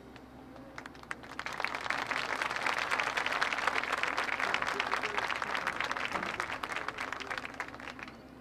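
Audience applauding, swelling about a second in and fading away near the end.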